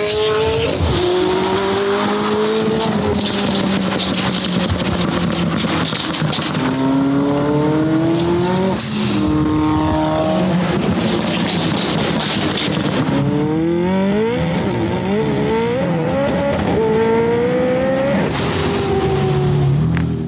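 McLaren 720S twin-turbo V8 pulling hard through repeated accelerations, its note climbing and dropping back at each upshift, with a run of quick shifts in the second half. Two brief rushes of noise break in, about halfway through and again near the end.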